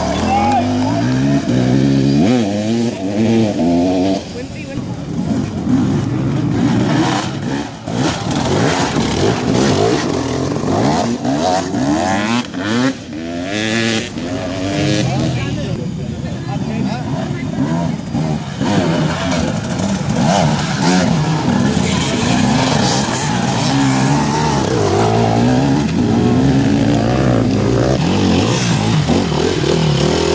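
Dirt bike engines revving up and down as several enduro bikes accelerate past close by, their pitch rising and falling again and again without a break.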